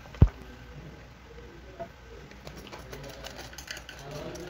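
One sharp knock as the hand-twisted garlic chopper is struck against the plastic bowl, followed by faint small clicks and scraping as the minced garlic is scraped out of it.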